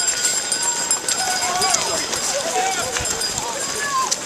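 A large pack of runners moving off together: many quick footsteps on pavement under a babble of voices and calls.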